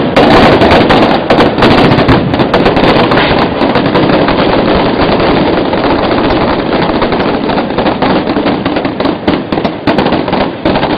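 Loud, dense barrage of rapid gunfire-like bangs and crackling pyrotechnic pops, with no pause between them; it grows a little patchier toward the end.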